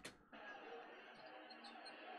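Near silence: a faint, steady background haze while the video is being scrubbed.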